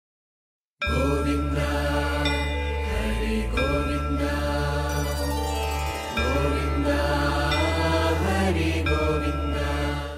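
Devotional music with a chanted mantra sung over a steady deep drone, starting after a brief silence about a second in.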